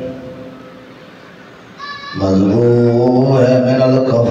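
A man's chanted religious recitation into a microphone: a line trails off into a pause of about a second and a half, then a new long, held note begins about two seconds in.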